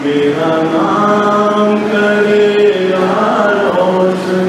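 An elderly man singing slowly in Hindi into a handheld microphone, drawing out long held notes.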